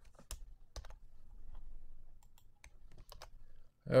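Computer keyboard keystrokes: a handful of separate key clicks, spaced irregularly, as keyboard shortcuts cut and paste a line of code.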